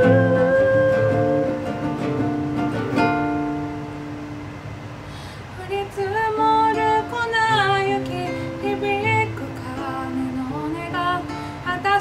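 Acoustic guitar accompaniment with female vocals in a live acoustic song performance. It opens on held notes, passes through a quieter, sparser stretch, and the singing comes back strongly about six seconds in.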